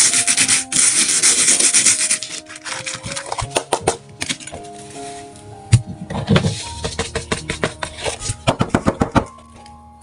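Loose coloured sand hissing as it is poured and spread across a sand-painting board for about the first two seconds, then a quick run of ticks and patter as the board is lifted and tipped to shake the loose sand off. Soft background music with held notes plays under it.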